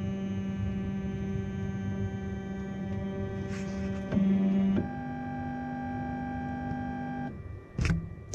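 Flashforge Dreamer NX 3D printer homing: its axis motors whine at a steady pitch. The pitch jumps and grows louder about four seconds in, shifts again a moment later, and stops about seven seconds in. The owner puts the squeaking during such moves down to dry guide rails that need grease. A sharp click comes near the end.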